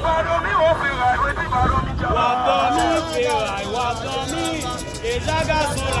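Protest crowd chanting and singing in overlapping voices, with a man's voice through a megaphone.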